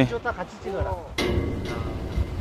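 Excited voices calling out briefly. About a second in, a rush of wind and surf noise sets in suddenly and stays steady.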